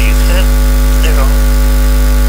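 Loud, steady electrical mains hum: a low drone made of several constant tones stacked one above another, unchanging throughout. Faint snatches of a voice come through it near the start and about a second in.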